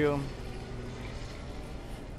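A man's voice ends a word, followed by a steady low background hum with nothing standing out.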